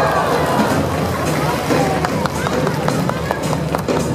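Show music with a singing voice played loud over a loudspeaker system, with splashes from dolphins leaping and re-entering the pool.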